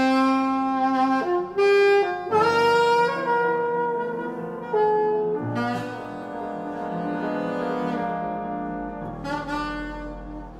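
Alto saxophone playing long held notes in a slow improvised jazz line over grand piano, loudest in the first few seconds and softer after about five seconds in.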